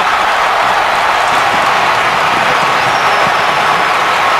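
Football stadium crowd cheering loudly and steadily after a touchdown.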